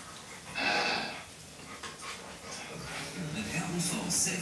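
A dog's short, breathy huff about half a second in, lasting about half a second.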